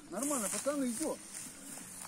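Men's voices calling out at a distance across the water during the fight with a hooked fish, with a faint hiss near the start.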